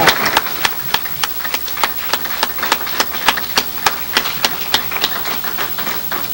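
Audience clapping together in a steady rhythm, about three claps a second.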